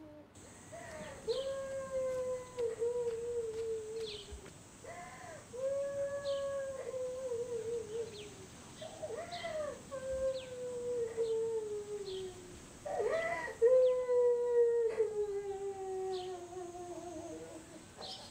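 Long howls, four in turn, each scooping up at the start and then sliding slowly down in pitch for three to four seconds. Short high chirps are heard above them.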